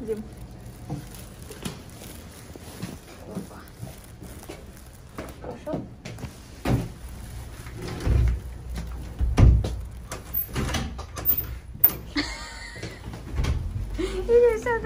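A door being opened and several dull thumps, with faint voices in the background.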